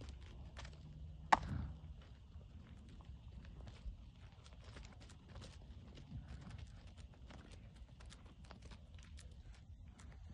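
Goats' hooves clicking and scuffing on dry, hard dirt as they move about and play, with one sharper knock just over a second in.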